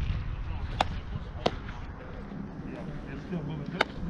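Baseball smacking into leather gloves as a pitch is thrown and caught: three sharp pops, about a second in, a second and a half in, and near the end, over a low rumble of wind on the microphone.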